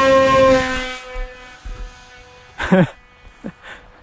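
Small brushless electric motor (Racerstar 2205-2300kv) spinning a Gemfan 6042 two-blade propeller on a hand-launched flying wing. It gives a steady high whine with strong overtones at launch throttle, which fades away after about a second as the plane flies off. A short laugh comes near the end.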